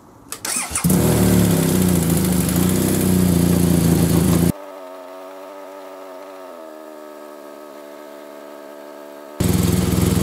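BMW R1200GS LC boxer-twin engine cranked on the starter and catching about a second in, then running steadily at a cold idle while it warms up for an oil-level check. About halfway through the sound drops suddenly to a quieter, steady hum, and the loud running comes back just as suddenly near the end.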